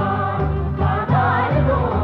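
Folk music from a small band with violin and clarinet, with voices singing over a steady pulsing bass beat.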